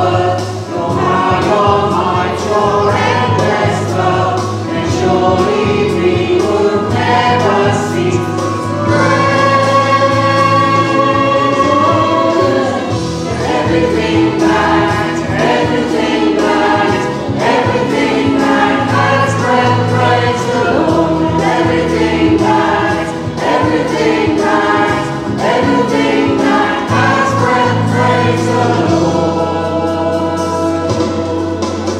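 Christian worship song: a group of voices singing together over steady sustained instrumental backing.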